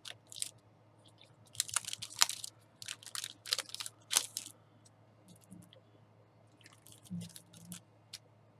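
Clear plastic stamp packaging crinkling and rustling in irregular bursts as a clear stamp sheet is pulled out of its sleeve and handled, busiest in the first half and thinning to a few light ticks later.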